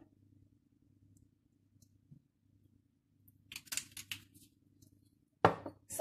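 Faint kitchen room tone with a low hum, then a short run of scraping clicks and, near the end, one sharp knock: a glass sauce bottle being handled and set down on a wooden worktop.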